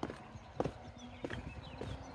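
Footsteps going down stone steps: short, hard treads about every half second or so, four in all.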